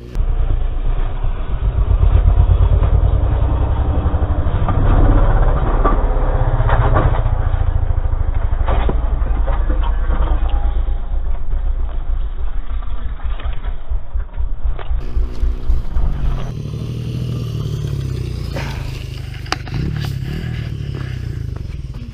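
Yamaha dual-sport motorcycle engine running hard and revving for about fifteen seconds, with a few sharp knocks in among it. After that the engine sound drops to a quieter, lower running.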